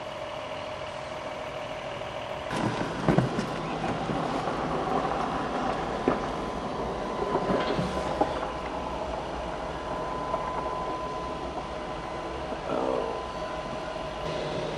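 A few knocks and clunks, the loudest about three seconds in, over a steady mechanical hum with a faint high tone.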